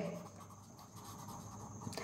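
Faint scratching of a pen writing on lined notebook paper.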